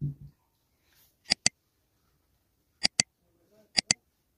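Mouse-click sound effects from an animated like, subscribe and notification-bell overlay: three sharp double clicks, about a second in, near three seconds and just before the end. At the very start a soft thump of a mug being set down on a table.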